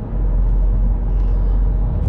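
Steady low rumble of a moving car heard from inside its cabin: road and engine noise with nothing sudden in it.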